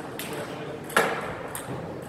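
Celluloid-type table tennis ball clicking against a hard surface: a faint tap just after the start and one sharp click about a second in.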